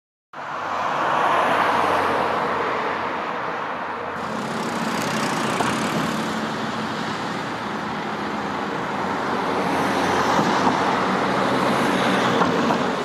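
Road traffic noise: a steady rush of passing cars that swells near the start and again near the end.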